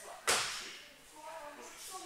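A single sharp slap about a quarter second in, ringing briefly in the large hall, with faint voices around it.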